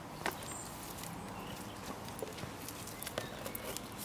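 A few sharp clicks and light knocks as a bramble-root puppet is picked up and handled, over quiet outdoor background noise. A brief high chirp comes about half a second in.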